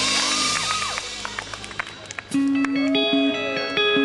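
Live rock band with electric guitars: a full chord rings out and fades in the first second, leaving a quieter gap with a few clicks. About two seconds in, an electric guitar starts a riff of clean, held single notes.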